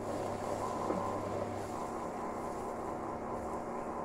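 Ground spices (mint powder, paprika and red chilli) frying in melted butter in a steel kadhai, a steady sizzle, over the steady hum of an induction cooktop.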